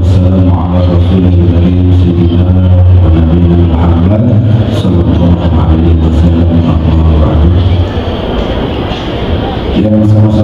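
A man's low voice chanting through a microphone and PA system, holding long notes and sliding slowly from one pitch to the next.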